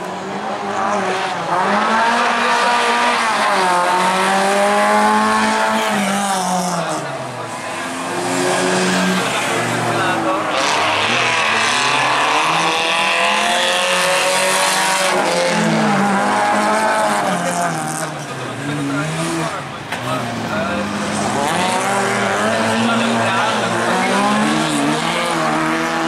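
Autocross race cars' engines revving hard on a dirt track, the pitch climbing and dropping over and over through gear changes and corners, with one car passing close about halfway through.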